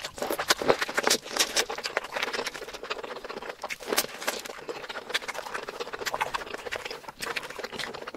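Close-miked eating sounds: a person chewing and smacking on food, with many small, wet, irregular clicks and crackles. The densest run of clicks is in the first two seconds and again about four seconds in.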